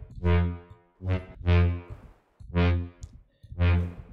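Synthesized brass/horn lead from the Vital soft synth, built from a saw wave and run through distortion, chorus, multiband compression and filtered reverb. It plays a run of short notes on the same low pitch, roughly one a second, each starting bright and quickly mellowing.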